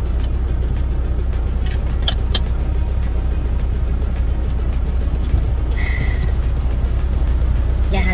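Semi truck's diesel engine idling, a steady low rumble inside the cab, with a couple of sharp clicks about two seconds in.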